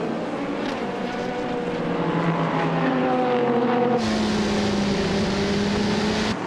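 LMP2 prototype race cars' Gibson V8 engines at racing speed, their engine note falling slightly in pitch as they pass. About four seconds in it cuts to an onboard sound: a steady engine note with more wind and road noise.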